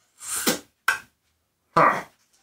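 Short knocks and clunks of hand tools being handled on a workbench: a breathy noise, then a sharp click about a second in and a louder clunk near the end.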